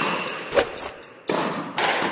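Sound-effect whooshes and deep thuds of an animated logo outro, with two heavy hits about a second and a half apart.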